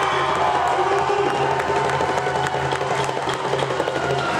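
Basketball spectators cheering and shouting after a play, with a few sharp claps or knocks in the second half.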